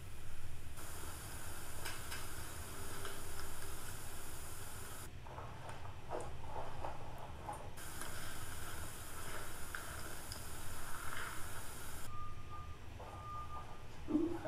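Pen writing on paper, faint light scratches over a steady low hum and a high hiss that cuts in and out abruptly. Two short beeps of the same pitch come near the end.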